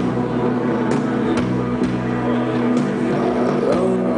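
Live rock band playing a slow passage of sustained, droning chords with a few scattered drum hits, heard from the crowd.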